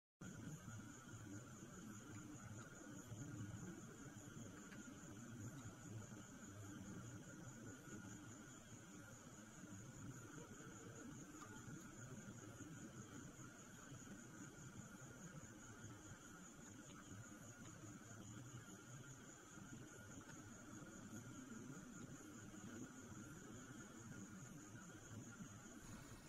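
Faint, steady night insect chorus: a constant high-pitched buzzing band with a second, lower band beneath it, over a low, uneven rumble.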